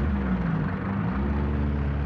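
Motor vehicle engines driving past. The pitch rises and wavers for about the first second, then settles into a steady low drone.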